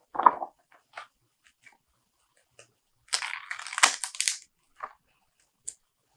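Stiff pages of a new hardcover omnibus being turned by hand. There is a short rustle, then a few light ticks, and about three seconds in a crackling, tearing sound lasting about a second as pages stuck together peel apart.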